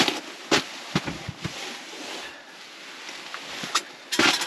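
Scattered knocks and clunks of people and gear shifting about inside a fabric ice-fishing shelter, over a steady hiss: a sharp knock about half a second in, a quick cluster of taps about a second in, and one more near the end.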